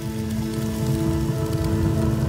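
Wood fire crackling in a stove, a dense patter of small pops, over background music holding a steady drone.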